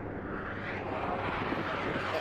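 An engine running steadily with a low hum, the noise growing slightly louder.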